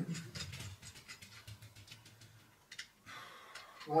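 Small, quick clicks and ticks of a hand rivet gun's metal parts being worked by hand while its nozzle is changed, with one slightly sharper click about three seconds in.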